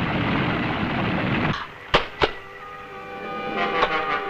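Film sound effects of a monster bursting out of rock: a loud steady rumble that drops away about a second and a half in, then two sharp cracks about a quarter second apart. After them a held sound of several steady pitches begins and swells near the end.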